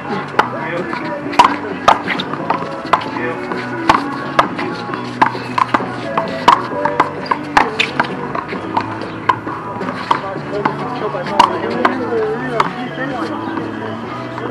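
A small rubber handball is slapped by gloved hands and rebounds off the wall during a doubles handball rally. It makes a string of sharp, irregular smacks, roughly one or two a second.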